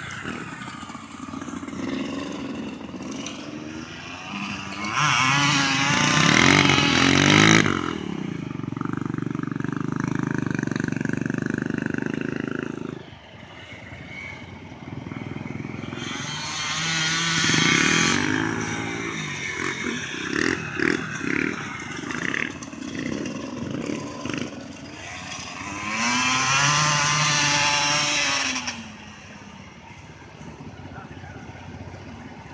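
Dirt bike and snowmobile engines revving and running at speed across ice. Three loud passes come about five, sixteen and twenty-six seconds in, each rising and falling in pitch, with steadier engine running in between.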